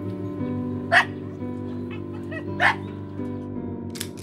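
A dog barks twice: once about a second in and again about a second and a half later, two short, loud barks.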